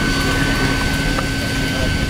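Bicycle turbo trainers whirring steadily under pedalling riders: a constant whine over a low rumble.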